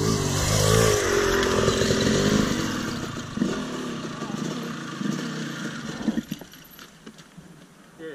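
Dirt bike engine revving hard on a steep wall climb, its note wavering under load, then dying away over the next few seconds as the bike stalls out on the slope.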